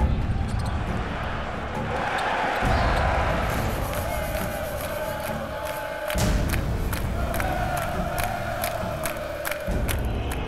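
Large arena crowd cheering and chanting, with sharp claps through the noise and background music underneath.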